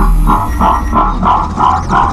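Electronic intro music: a synthesizer pulse repeating about three times a second over a steady low bass.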